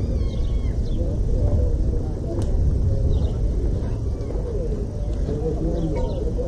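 Outdoor ambience: distant, indistinct voices over a steady low rumble, with a few short high chirps and one sharp click about two seconds in.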